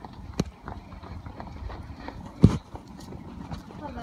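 Footsteps of runners and walkers on the concrete floor of a pedestrian underpass, an irregular clatter of steps, with one louder thump about halfway through.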